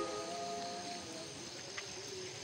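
Faint background music: a quiet passage with a soft held note.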